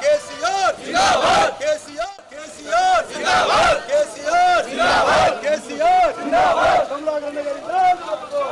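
A crowd of people shouting a slogan in unison, over and over, with short loud shouts about two a second.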